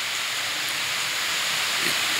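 Steady hiss of background noise, even and unbroken, filling a pause in speech.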